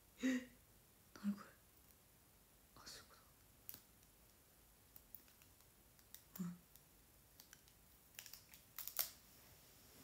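Scattered light clicks and taps from hands handling small objects, with a few brief soft murmured sounds from a woman's voice.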